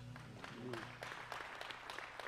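Scattered light clapping from a congregation, irregular and fairly quiet.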